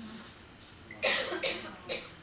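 A person coughing: three short coughs in quick succession, starting about a second in.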